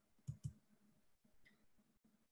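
Near silence with two faint clicks, about a fifth of a second apart, shortly after the start.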